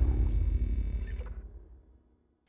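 Tail of a cinematic logo sound effect: a deep rumble left after a boom, dying away steadily to silence over the two seconds.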